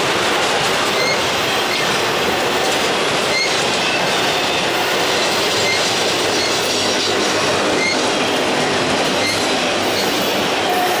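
Enclosed autorack freight cars rolling past at speed: a steady loud rush of steel wheels on rail, with short high wheel squeals recurring about once a second.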